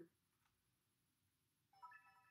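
Near silence: room tone, with a faint, brief steady tone near the end.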